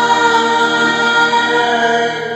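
A man singing karaoke over a recorded backing track with choir-like backing vocals, holding a long steady note on the song's closing line 'ease your mind'.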